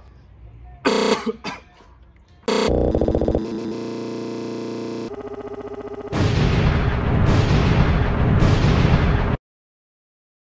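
Dubbed-in comedy sound effects: a blaring horn-like blast from about two and a half seconds, then a loud explosion with heavy rumble that cuts off abruptly near the end.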